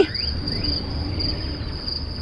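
Insects chirping outdoors: a high-pitched, evenly pulsing chirp that keeps on steadily over a faint low background rumble.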